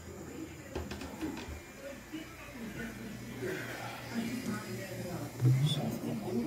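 Faint background voices, with rubbing and a few light clicks from the phone camera being handled against clothing; a louder low thump comes near the end.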